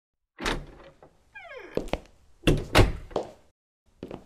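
Door sound effects: a knock, a short creak falling in pitch, then two heavy thuds about a third of a second apart and a softer one, as a door is opened and shut.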